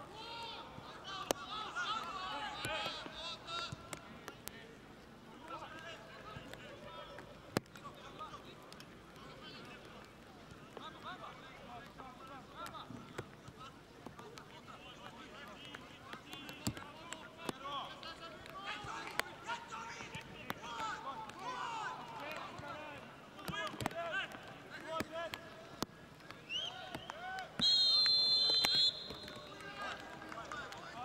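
Voices of spectators and players around a football pitch, with scattered sharp knocks of the ball being kicked. A loud, steady whistle blast of about a second and a half comes near the end.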